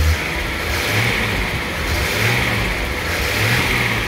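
Fuel-injected Datsun L28 2.8-litre straight-six, warmed up, revved about three times in quick succession from idle.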